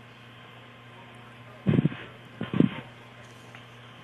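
Launch communications audio feed, band-limited and open between calls: a steady low electrical hum with hiss, broken by two short loud bursts a little before and just after the middle.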